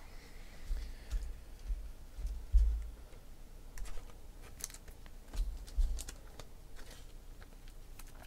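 Hands handling trading cards on a tabletop: scattered soft thumps against the table, the loudest about two and a half seconds in, with a few light clicks.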